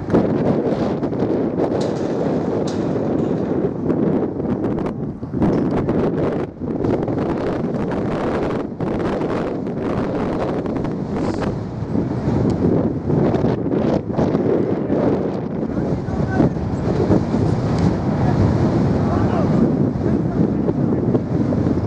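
Wind buffeting the camera microphone in uneven gusts, with distant voices of players and spectators underneath.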